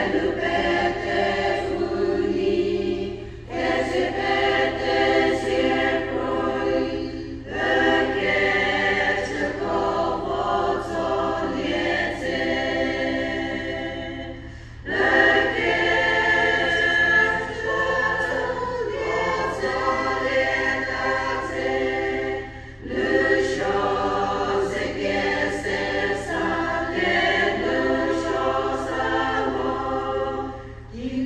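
Women's choir singing a hymn in sung phrases, each broken by a short pause for breath.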